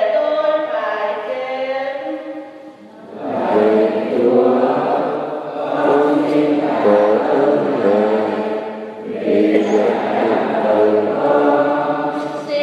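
A choir singing, voices holding long notes; the singing dips briefly about three seconds in, comes back with fuller voices, and dips again near nine seconds.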